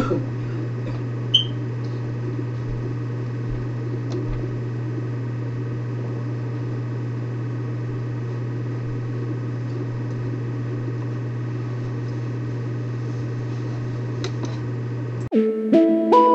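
A steady low hum under a faint hiss of open-air noise, with one click about a second in. Near the end the sound cuts suddenly to background music with plucked notes.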